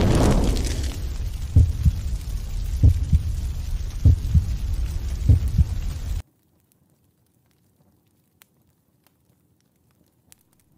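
Sound effect of an animated logo sting: a whoosh falling from high to low into a deep, steady drone, with deep thuds about every 1.2 seconds. It cuts off suddenly about six seconds in, leaving near silence.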